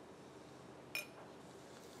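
A single metallic clink about a second in, a spoon striking metal dishware with a brief ringing, over quiet room tone.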